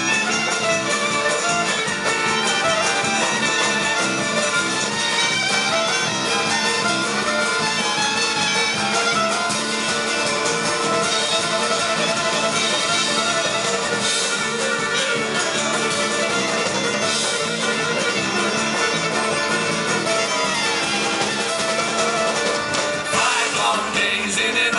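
Live Celtic rock band playing an instrumental break, with fiddle, tin whistle, acoustic guitar, electric bass and drum kit at a steady, loud level.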